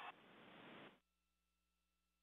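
Near silence: a faint hiss that cuts off about a second in, then only a faint steady hum.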